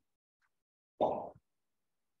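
One short, dull plop about a second in, in otherwise near-silent audio.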